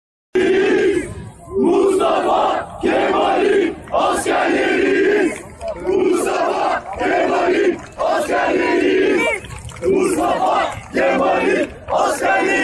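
Large crowd of football supporters chanting in unison while marching, a loud shouted chant in regular bursts of about a second each, with short breaks between.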